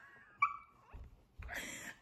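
A woman's stifled laugh behind her hand: a short, high-pitched squeal about half a second in, then soft breathy laughter.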